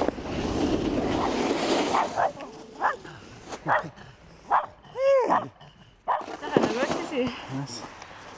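A snowboard sliding over snow for the first two seconds. Then a canine gives a series of short barks and yelps, with one longer call that rises and falls in pitch about five seconds in.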